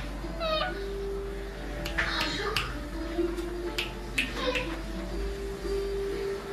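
Alexandrine parakeet bathing in a shallow bowl of water: short sharp calls in the first second, then a run of quick splashes and squawks from about two seconds in.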